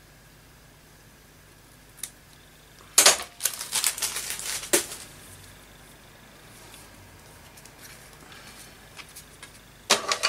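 Small craft scissors snipping seam binding ribbon and then clattering down onto a plastic paper trimmer: a quick cluster of sharp clicks and clacks about three seconds in, followed by faint paper and ribbon handling, and another clack near the end.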